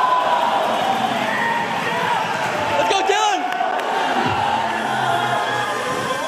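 A crowd of spectators shouting and cheering in a reverberant hall, many voices at once, with a high, wavering whoop about three seconds in.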